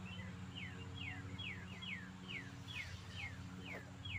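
A bird calling over and over: a quick series of short downward-slurred chirps, about two a second, over a steady low drone.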